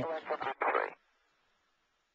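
The last word of a man's commentary voice, cut off about a second in, then dead silence.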